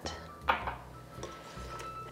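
A single short clink of kitchenware about half a second in, then quiet, with faint background music underneath.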